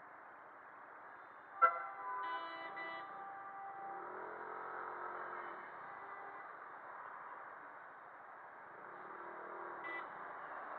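Vehicle horns honking in heavy city traffic over steady road and wind noise. A sharp knock about one and a half seconds in is the loudest sound, followed at once by a horn blast lasting about a second and a half, with another short honk near the end.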